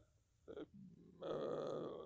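A man's low, rough vocal sound lasting under a second, starting a little past halfway after near silence.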